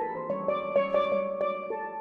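Steel pans played with mallets: a jazz tune on struck, ringing metal notes, several sounding together, following each other quickly.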